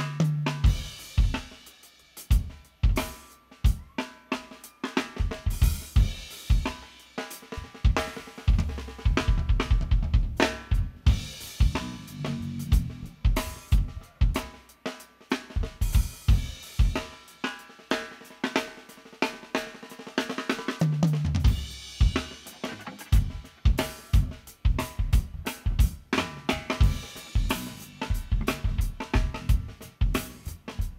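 A drum kit played mostly on its own: rapid snare and bass drum strokes with hi-hat and cymbal crashes running throughout. A low bass note sounds briefly about two-thirds of the way through.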